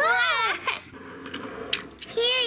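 A high, wailing voice, a person imitating a crying toddler, ends about half a second in. After it comes a quieter stretch with a few light clicks.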